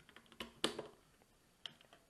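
Light clicks and taps of two small polymer-framed pocket pistols, a Ruger LCP II and an M&P Bodyguard 380, being handled and brought together. There are a few sharp clicks about half a second in and another knock near the end.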